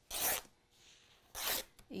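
Fabric being torn by hand into strips: two short ripping sounds, one right at the start and one about a second and a half in.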